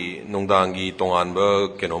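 Speech only: a man talking in a low, fairly even voice.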